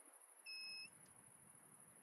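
Near silence broken by one short electronic beep about half a second in, two high tones together lasting about a third of a second, over a faint steady high whine.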